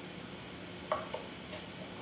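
Chef's knife cutting raw chicken wings apart at the joint on a wooden cutting board, with two short knocks of the blade against the board about a second in.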